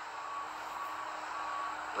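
Steady background noise with a faint, thin high hum and no clear events.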